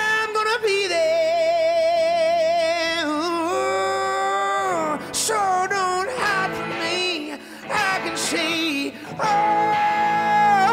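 A man singing with long held notes, one wavering in a wide vibrato, over electric guitars played together live in a room.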